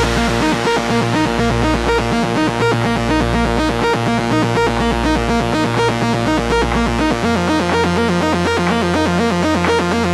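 Melodic techno / progressive house instrumental: a fast, evenly repeating synthesizer arpeggio over a held bass note, the bass shifting to a new note about seven seconds in.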